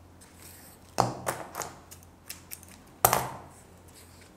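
Handling clicks and knocks from tying a wired fabric flower stem with thread over a cutting mat: a few light clicks from about a second in, and the loudest knock near three seconds, as the spool of thread is set back down.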